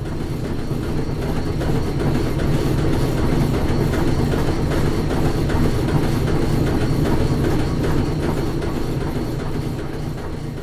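Cinematic logo sound design of turning metal gears: a dense low rumble with rapid mechanical clicking and clatter, mixed with music. It swells over the first few seconds and eases off near the end.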